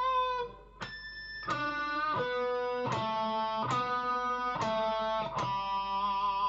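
Telecaster-style electric guitar playing a lead lick slowly, one note at a time. A held note ends about half a second in, then about seven single notes follow, picked roughly one every two-thirds of a second, each ringing until the next.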